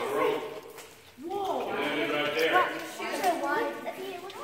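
Several people's voices talking, with no clear words, and a brief lull about a second in.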